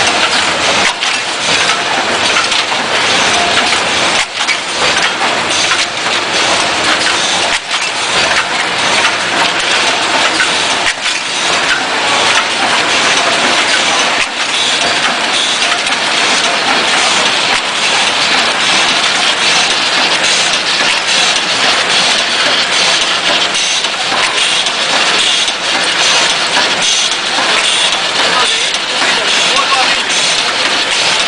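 Automatic blister packing and cartoning line running, a steady dense clatter of machinery with many small clicks.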